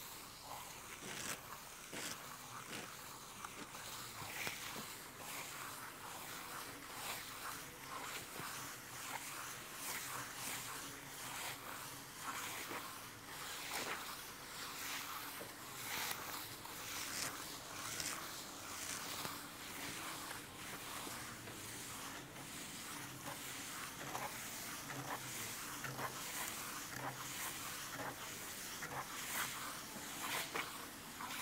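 Wooden float rubbing over damp cement-sand plaster on a wall, a faint rasping scrape repeated stroke after stroke, about one or two a second: the floating of the plaster coat to a uniform surface.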